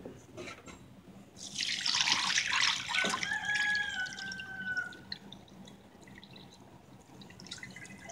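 Water poured from a plastic bucket onto a cloth-covered sand-and-gravel filter bucket. It splashes heavily from about one and a half to five seconds in, then thins to a soft trickle.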